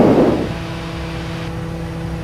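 Steady cockpit drone of a Piaggio P180 Avanti climbing out: its twin pusher turboprops give a constant low hum with a few steady tones above it. A brief hiss fades away in the first half second.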